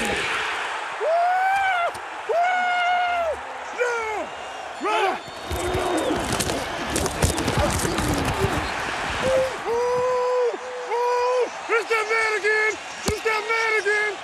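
Loud, drawn-out wordless shouts from men's voices over constant stadium crowd noise. Sharp thuds of football pads and helmets colliding come in the middle, during a pile-up tackle.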